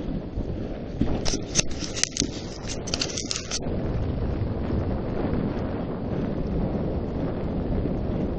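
Wind buffeting the microphone over a steady low rumble from a dog sled moving over snow. Between about one and three and a half seconds in comes a quick run of short, sharp scraping hisses.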